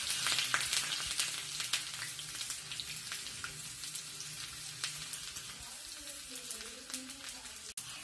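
Hot oil sizzling and crackling in a steel kadai as a battered mixture deep-fries, with many small pops; the sizzle is strongest at first and slowly dies down.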